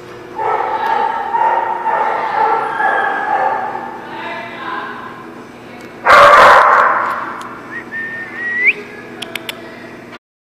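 A dog's long, wavering whine for about five seconds, then one loud bark about six seconds in, followed by a short rising whine.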